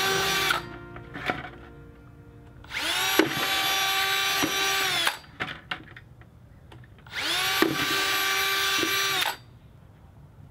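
Cordless drill with a 3/8-inch bit boring holes through the wall of a plastic bucket, in three runs: one ending about half a second in, then two more of about two seconds each, each climbing quickly to speed. A few sharp clicks fall in the pauses between runs.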